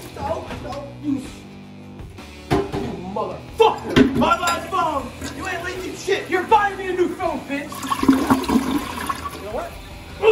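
A toilet flushing, its rushing water coming in about eight seconds in, under two men's raised voices and background music.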